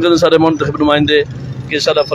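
A man speaking into a handheld microphone, pausing briefly near the end of the second second, with a steady background of street traffic.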